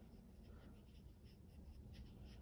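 Faint, repeated light strokes of a flat paintbrush on wet watercolor paper, the bristles scratching softly as the brush works back and forth, a few strokes a second.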